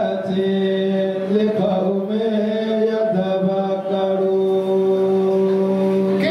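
A man's voice chanting into a microphone in long, held notes, shifting pitch only a few times.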